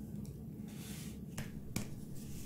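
A smartwatch and its silicone strap being handled and laid down: a soft rustle, then two sharp clicks about a third of a second apart, the second louder.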